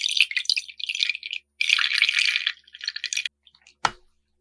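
Milk gushing from two cartons into a glass bowl, splashing onto the milk already in it, in uneven surges. The pouring stops a little after three seconds, and a single sharp knock follows near the end.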